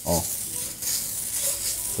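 A slab of bacon sizzling as it is rubbed across the hot plate of an electric crepe maker, rendering a thin layer of fat onto it. The sizzle is a steady hiss.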